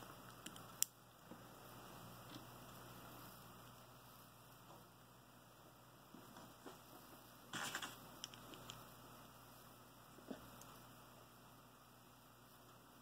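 Near silence with a few faint clicks from LEGO minifigure parts being handled. A small cluster of clicks comes past the middle.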